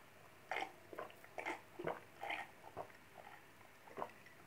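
A person gulping down a drink in a run of about six swallows, roughly two a second, which stop about three seconds in.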